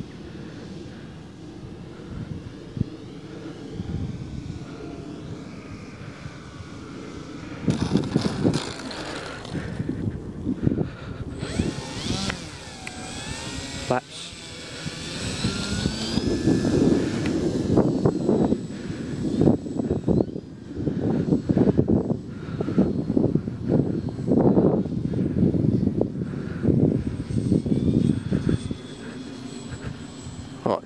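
Electric motor and propeller of a Dynam Beaver RC model plane whining, its pitch sliding up and down with the throttle as it comes down for a touch-and-go and climbs away. A steady high tone runs under it, and loud uneven low noise fills the second half.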